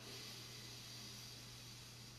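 A slow, deep breath drawn in, heard as a quiet steady hiss over faint room tone with a low steady hum.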